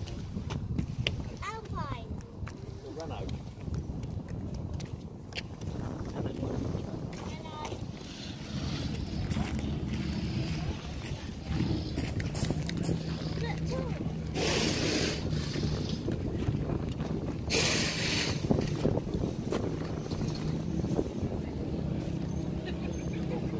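Background voices and outdoor ambience, with a steady low drone in the second half and two short bursts of hiss a few seconds apart past the middle.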